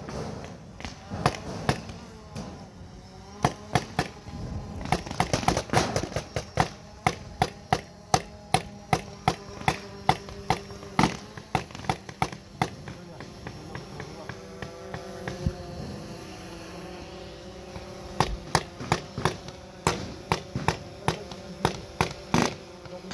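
Paintball markers firing: sharp pops, some single and some in quick strings of several shots a second, with no long pause.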